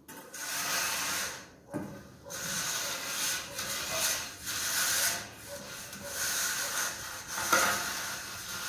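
Metal screed straightedge dragged back and forth over wet cement subfloor mortar, a gritty scraping in repeated strokes as the fresh screed is levelled.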